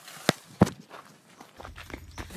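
A few footsteps of a person running on a dirt path. Two sharp steps fall in the first second, followed by fainter ones near the end.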